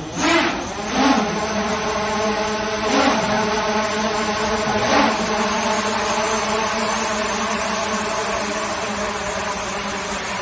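A swarm of hundreds of small quadcopter drones buzzing as they lift off and hover, swelling in a few surges over the first five seconds, then holding a steady, many-toned hum.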